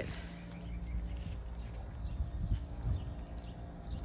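Quiet residential street ambience: a steady low rumble with a few soft, irregular knocks around the middle.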